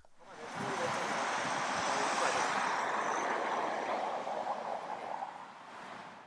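Road traffic noise: a steady rushing hiss of a vehicle going by on the street, fading near the end.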